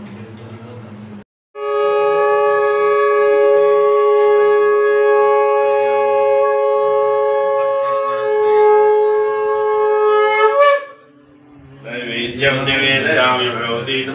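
Conch shell (shankh) blown in one long, steady, loud note lasting about nine seconds. The note rises briefly in pitch as it ends.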